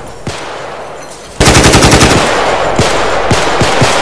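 Automatic rifle fire: a sudden, loud rapid burst of shots about a second and a half in, about a dozen a second, followed by continued loud firing with scattered single hits.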